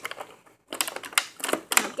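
Rapid clicking and crackling of a clear plastic blister tray as a die-cast toy car is pried out of it by hand, starting about two-thirds of a second in.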